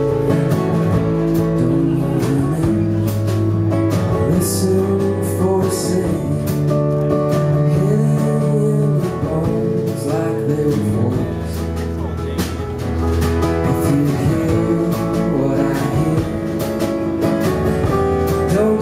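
Live folk-rock band playing an instrumental passage: strummed acoustic guitar over upright bass and drums, with a few cymbal washes.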